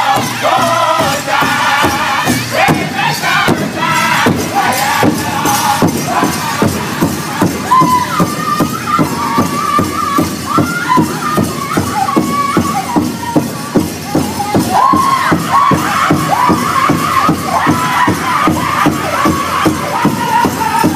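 Powwow drum group: several men singing high in unison over a large shared powwow drum, struck together in a steady beat.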